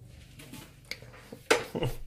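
Quiet hallway, then a sharp clack about a second and a half in, as the metal front door of the flat is handled.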